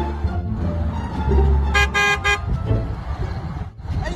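Car horn honking in a few quick short blasts about two seconds in, over background music.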